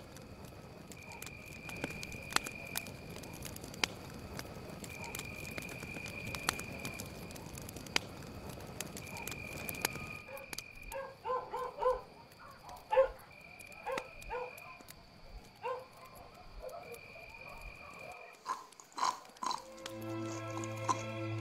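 Animal calls on an old film soundtrack: a high call about a second long repeats every few seconds over a hiss with scattered clicks. From about halfway, short clipped calls come in quick clusters.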